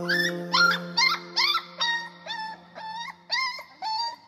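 A dog yelping and whimpering about ten times in quick succession, each call short and rising in pitch, growing fainter toward the end, over a fading low held note.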